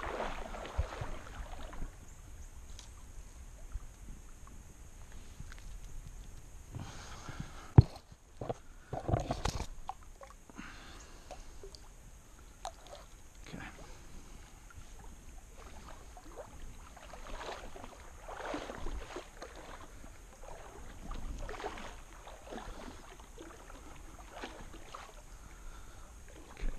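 Shallow creek water sloshing and splashing in irregular bursts as someone wades and moves about in it, with a sharp knock about eight seconds in.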